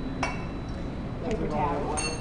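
Glass beaker set down on the metal pan of an analytical balance with a sharp clink about a quarter second in. A fainter knock follows, then a ringing glassy chink near the end as glass touches glass.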